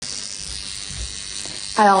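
High-frequency (violet-ray type) skin wand with a glass electrode held against the skin, giving a steady, high-pitched hissing buzz. A woman starts speaking near the end.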